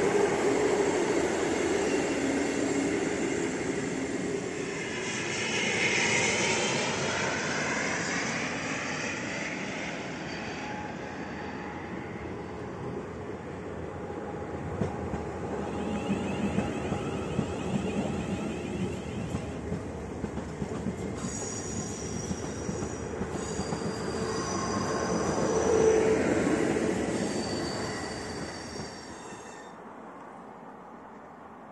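Trains moving through a station on the rails: a passing train rumbles and rattles over the track, then an electric multiple unit runs along the platform with high steady whining and squealing tones in its last several seconds, loudest just before the sound cuts off.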